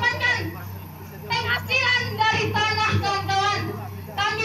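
A woman speaking loudly into a handheld microphone in quick phrases, pausing briefly about half a second in before carrying on, over a steady low hum.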